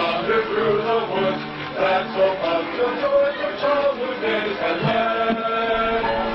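A group of voices singing a song together, moving from held note to held note.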